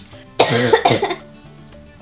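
A woman coughs briefly about half a second in, over quiet background music.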